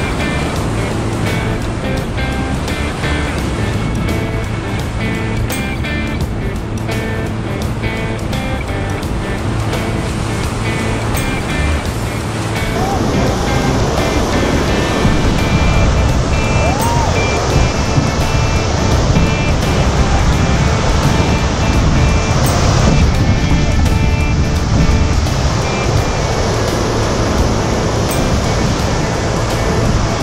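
Instrumental music over rushing whitewater; about thirteen seconds in, the water noise grows louder as the raft runs a big rapid.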